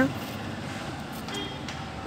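Steady low rumble of road traffic, with a faint short tone about one and a half seconds in.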